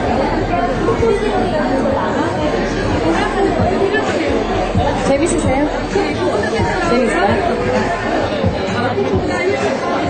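Chatter of many overlapping voices in a large hall, steady throughout, with no single clear speaker.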